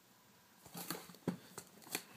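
A shrink-wrapped cardboard hard-drive box being handled and turned over by hand: a few short crinkles and taps on the plastic wrap and cardboard, starting just under a second in.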